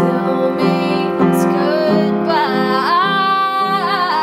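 Upright piano playing sustained chords, with a woman's singing voice coming in about halfway through, sliding up into a long held note with vibrato.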